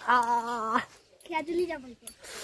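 A man's wordless vocal cry, held at one steady pitch for under a second, then a second, shorter cry that bends in pitch about a second later, as he grimaces.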